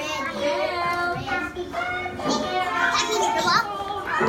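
A room full of young children chattering and calling out at once, their high voices overlapping, with a few excited rising calls about three seconds in.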